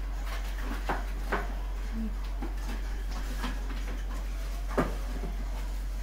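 A steady low electrical hum with a few short, sharp taps of hands meeting while signing. The loudest tap comes near the end.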